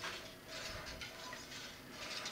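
Homemade gravity wheel turning under a light hand push, giving faint mechanical ticks and rattles from its pivots and the pulley wheels running on its slide arms.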